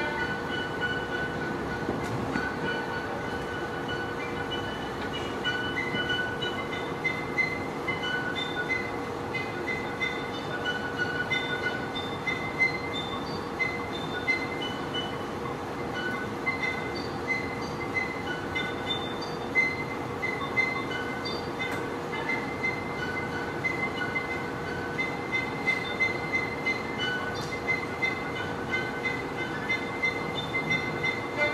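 Ambient soundscape: a steady drone with one constant mid-pitched tone under a noisy haze, and short high squeal-like tones scattered across it, coming and going every second or so.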